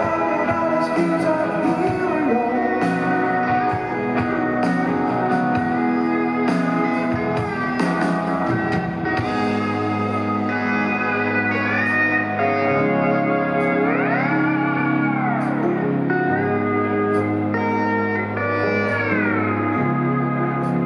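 Live rock band playing an instrumental passage: a steel guitar carries the melody in sustained sliding notes over bass, drums and cymbals. About two-thirds of the way through the steel guitar slides up and back down, and near the end it slides down again.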